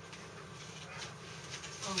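Thunderbolt 1000T outdoor warning sirens sounding in the distance, heard as a steady buzzing drone. A voice murmurs "mm-hmm" near the end.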